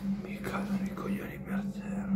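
A man's voice, quiet and half-whispered, over a steady low hum.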